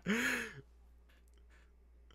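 A man's short voiced sigh as a laugh ends: one breathy 'ahh' of about half a second, rising then falling in pitch, followed by faint clicks.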